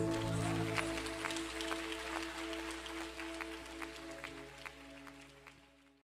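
A live worship band's final sustained keyboard chord slowly fading out, its low bass notes dropping away about a second in, with scattered faint clicks over it.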